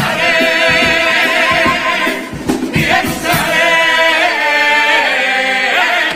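A carnival comparsa's male choir singing long held chords with vibrato, with a short break a little over two seconds in.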